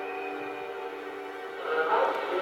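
Symphony orchestra holding a sustained chord of several steady notes that slowly fades; near the end a louder, fuller passage swells in.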